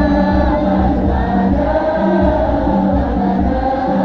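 A group of voices singing sholawat together, loud and steady, over a regular low beat.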